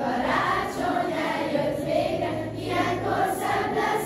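A choir of girls singing a slow melody together, with long held notes.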